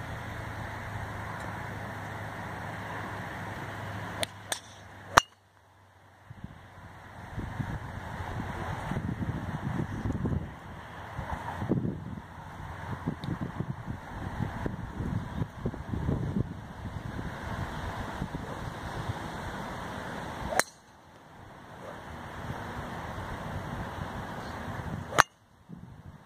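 Sharp cracks of a golf driver striking teed-up balls: the loudest about five seconds in and another just before the end, with a fainter one in between. Wind noise on the microphone fills the time between strikes.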